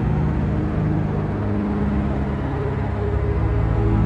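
Sampled string ensemble (violins and cellos combined) from the World Music Day Strings software instrument playing slow, sustained low chords, the notes shifting a couple of times.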